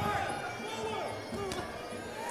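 Faint background voices from the crowd and people around the ring: scattered short calls and chatter, with no loud event.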